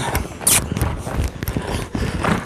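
Horse's hoofbeats on soft arena sand, with saddle and rider movement, as the horse moves off at speed; a short sharp hiss about half a second in.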